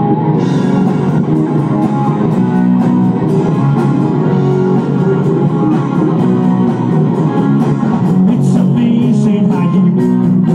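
Live rock band playing an instrumental passage, loud and steady: electric guitars over a drum kit keeping an even beat.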